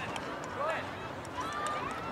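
Indistinct voices of people talking and calling out in the distance, with a few faint light ticks.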